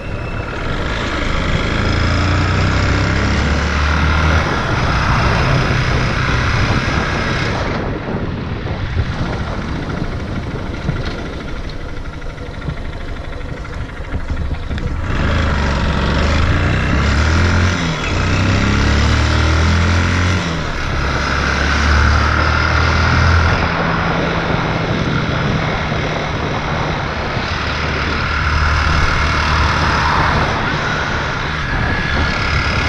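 A vehicle running: a steady noisy rumble with a low engine hum that shifts up and down in pitch. The sound is quieter for several seconds partway through.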